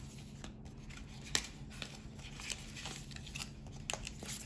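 Glossy photocards and paper album inserts being handled and sorted by hand: soft rustling with a few light clicks of card edges, the sharpest a little over a second in.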